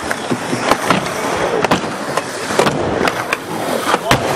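Skateboard rolling across skatepark ramps: steady wheel noise, broken by several sharp clacks of the board.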